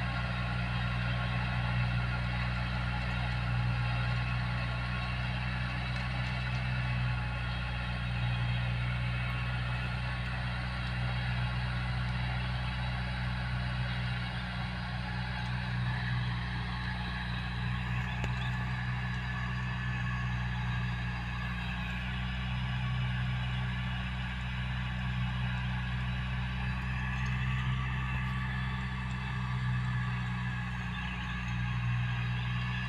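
Tractor diesel engine running steadily under load as it pulls a bed-forming implement through tilled soil.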